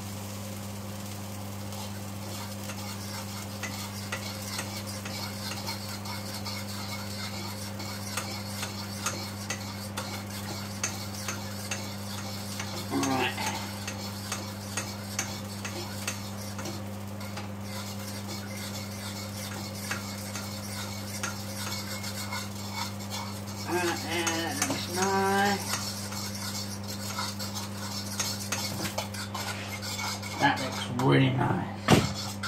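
A spoon stirring gravy in a saucepan on an electric hob, clicking and scraping irregularly against the pan as the gravy is worked until it thickens. A steady low hum runs underneath.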